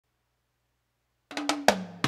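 Silence, then background music starts about a second and a quarter in with a few sharp drum hits, with pitched notes ringing after them.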